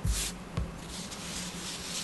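Sheets of paper rustling as they are handled and lifted, loudest right at the start, with softer rustles about a second in.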